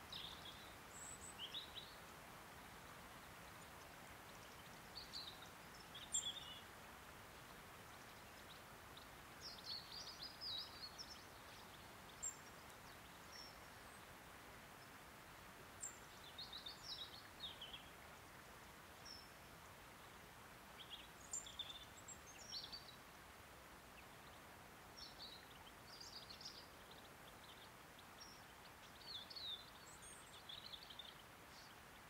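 Faint birdsong: short, high chirps and twitters come every second or two, in small clusters, over a steady low hiss.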